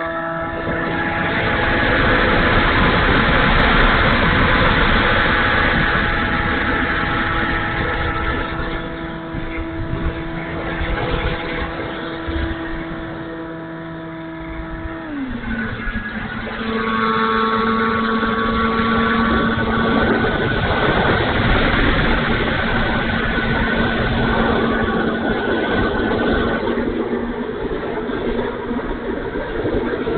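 An E-flite Timber RC plane's electric motor and propeller whining steadily in flight, with wind rushing over the onboard microphone. About halfway through, the pitch drops suddenly as the motor slows to a lower throttle setting, and it runs on steadily at the lower pitch.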